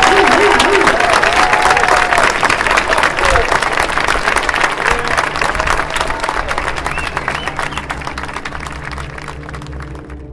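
Audience applauding, with a few voices calling out, the clapping slowly fading while low music comes in near the end.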